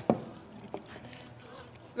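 A couple of light knocks and some handling noise as serving bowls lined with paper are handled and set down on a counter.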